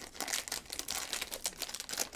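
Foil wrapper of a trading-card pack crinkling in rapid, irregular crackles as hands pull it open and slide the cards out.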